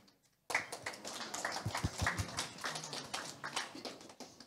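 Audience applauding: a dense patter of many hand claps that starts suddenly about half a second in and thins out near the end.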